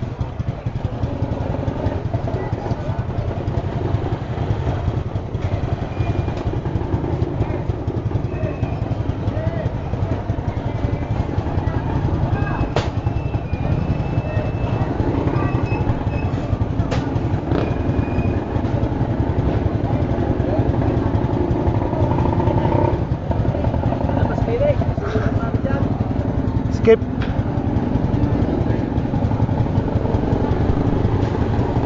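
Motorcycle engine idling steadily at low speed, with people talking and a few short clicks and knocks over it.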